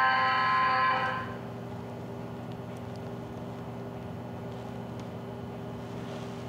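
PRESTO fare-gate card reader sounding its rejection tone, a steady buzzing tone that cuts off about a second in: the card has already been tapped and is refused. A steady low machine hum continues underneath.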